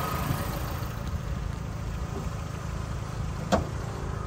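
Chevrolet Aveo's 1.4-litre E-TECH II 16-valve four-cylinder petrol engine idling steadily and smoothly, heard with the bonnet open, with a single short click about three and a half seconds in.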